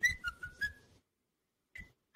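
A man's whistled impersonation of R2-D2: a quick run of short whistled beeps that step down in pitch in the first second, then one more brief beep near the end.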